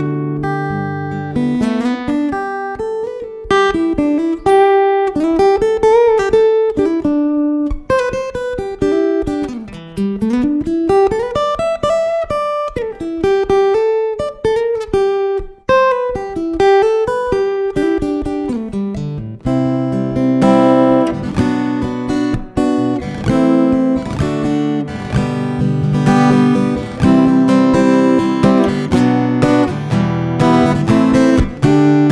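Takamine GN11MCE all-mahogany acoustic-electric guitar being fingerpicked: a single-note melody with sliding pitches, giving way to fuller ringing chords about two-thirds of the way through.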